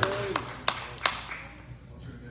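A few scattered hand claps, four sharp claps about a third of a second apart, as a voice trails off and the room quietens.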